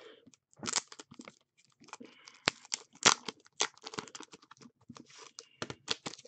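Clear plastic card sleeves crinkling and rigid plastic card holders clicking as they are handled, in short, scattered crackles.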